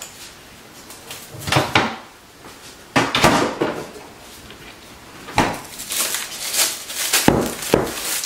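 Refrigerator and bowl handling: a series of knocks and clatters as the fridge is rummaged, a mixing bowl is lifted out, and the bowl is set down on the counter, with the busiest clattering in the last few seconds.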